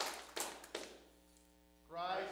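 Hand clapping in a steady rhythm, about three claps a second, that stops about a second in. A faint held tone follows, and a voice starts right at the end.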